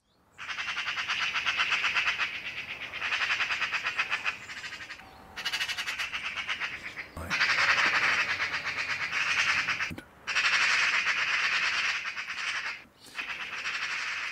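Eurasian magpie chattering: harsh, rapid rattling calls in a series of bursts of about two to three seconds each, with short breaks between them.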